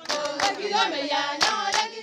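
A group of voices singing together, with a few sharp hand claps among them.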